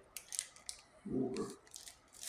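Plastic wrapping of a packet of bread slices crinkling as it is handled, in a few short crackles, with a brief voiced sound from a man about a second in.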